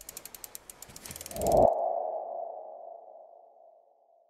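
Logo-animation sound effect: a quick run of ticking clicks builds into a swell about a second and a half in, then a single ringing tone fades out.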